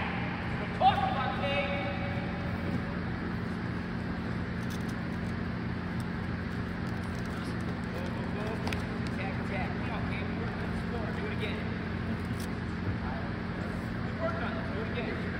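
Steady low hum of a large gym's room noise with scattered voices, a short exclamation about a second in, and a few faint clicks and shuffles from wrestlers drilling on the mat.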